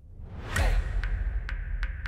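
A swelling whoosh transition effect with a deep bass hit about half a second in. It is followed by a title sting of sharp, evenly spaced ticks, about two a second, over faint held tones.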